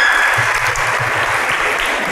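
Audience applauding, fading a little toward the end.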